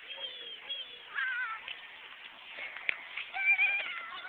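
A toddler making high-pitched vocal sounds twice: a short wavering one about a second in, and a louder, longer one after three seconds.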